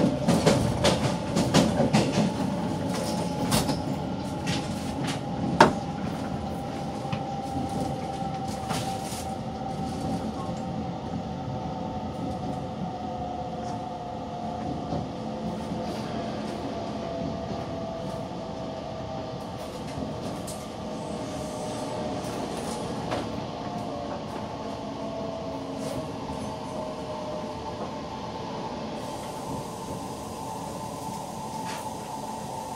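Inside a Korail Nuriro electric multiple unit slowing into a station: steady running noise with a faint whine that slowly falls in pitch as the train decelerates. Clicks from the wheels crossing rail joints and points come through the first several seconds, with one sharp clack about five and a half seconds in, and the sound grows gradually quieter.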